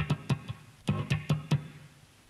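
Electric bass (a Roland G-77) playing muted, damped funk notes: about seven short, clicky strikes in two quick groups, each cut off almost at once.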